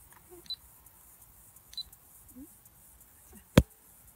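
A rifle fires a single sharp shot about three and a half seconds in. Two faint ticks come before it.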